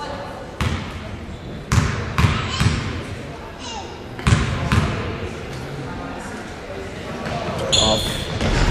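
Basketball bounced on a hardwood gym floor at the free-throw line: a single bounce, then three quick bounces, then two more, each ringing in the large hall. A brief high squeak comes just before the end, as the players move in for the rebound.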